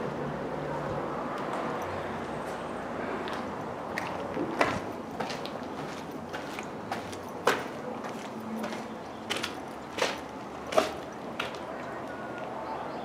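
Footsteps going down gritty concrete stairs, with irregular sharp steps and scuffs starting about four seconds in over a steady background noise.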